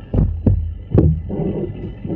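Three dull thumps, roughly a third to half a second apart, heavy in the low end, picked up over the microphone.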